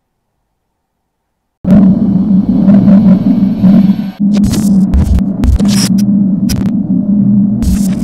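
Digital silence, then about a second and a half in a loud electronic logo sting starts: a heavy low buzzing hum broken by glitchy crackles and thuds.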